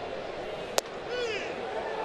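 Steady ballpark crowd murmur with one sharp crack about a second in: a pitched baseball tipped off the bat into the catcher's mitt for a foul-tip strike three. A faint voice follows.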